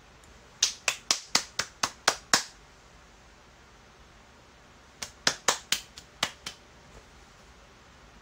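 Two quick runs of sharp clicks, about eight in the first and seven in the second, a few seconds apart, each going at roughly four to five clicks a second.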